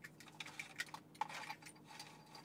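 Plastic wiring-harness connectors being handled and pushed together, giving a series of irregular light clicks and rattles as the plug-and-play harness is mated to the main connector.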